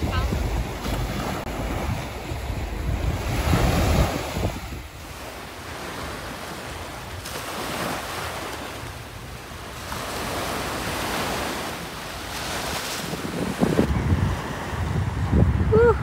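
Small waves breaking and washing up on the beach in repeated soft swells, with wind gusting on the microphone, loudest in the first few seconds.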